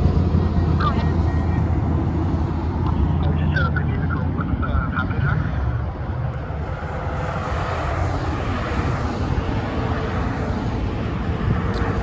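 Multi-lane highway traffic: the steady tyre and engine noise of cars and trucks passing at speed, heaviest at first and easing a little about six seconds in.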